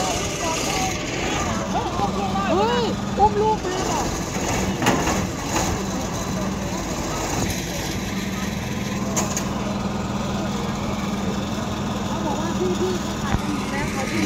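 An engine running steadily in the background with a low, even hum, under faint voices.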